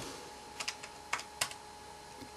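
Calculator keys being pressed: a quick run of about half a dozen short clicks as a sum is keyed in.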